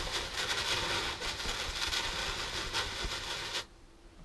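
Insecticide applicator blowing treatment through a lance into a German wasp nest hidden in the roof eaves: a steady hiss that cuts off suddenly near the end.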